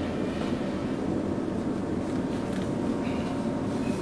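A steady low rumble of background noise that keeps an even level throughout.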